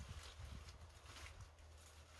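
Faint rustling, crackling and a few soft knocks as gloved hands pull apart a large clump of white-spine aloe.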